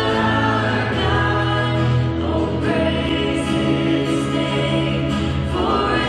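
A live worship band playing a slow song: several voices singing together in long held notes over acoustic guitar and keyboard.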